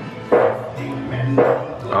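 Pirate shooting gallery's recorded soundtrack: steady background music with two sudden effect sounds triggered by target hits, about a third of a second and about a second and a half in.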